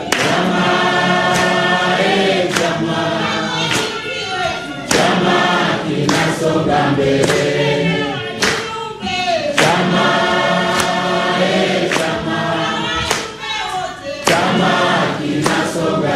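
A large crowd singing a song together in chorus, with a sharp beat about every second and a quarter.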